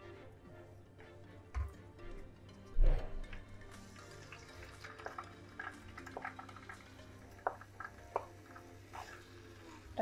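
Soft background music, with light knocks and scrapes as a wooden spoon pushes sliced potatoes out of a ceramic bowl into a frying pan of hot oil; one heavier thump comes just under three seconds in.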